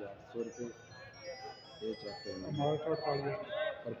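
Men's voices calling out at a produce auction, with a tinkling, jingle-like run of short high tones sounding through most of it.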